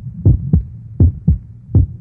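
Heartbeat sound effect: low double thumps, lub-dub, repeating in a steady rhythm of a little under a second per beat, about three beats in all.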